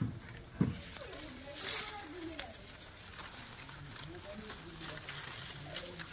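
Faint, low voices under the rustle of mango leaves and a plastic mesh net bag as mangoes are picked into it, with two soft knocks near the start.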